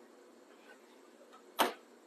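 Quiet room tone broken by a single sharp knock about a second and a half in.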